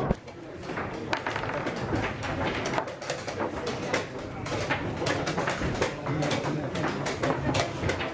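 A blitz chess game: quick irregular clicks of pieces set down on the board and the clock being pressed, over low voices.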